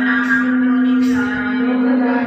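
Devotional Sikh chanting, voices repeating a simran over a steady held drone note that never breaks.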